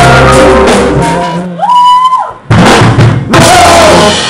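Live band with hand drums (congas and bongos) and a drum kit playing loud. About a second in the playing thins out to a single note that bends up and holds, then after a short gap the band comes back in with hard drum hits.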